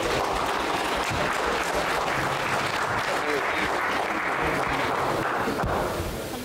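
Audience applauding in a large hall, steady clapping with some voices mixed in, dying away at the end.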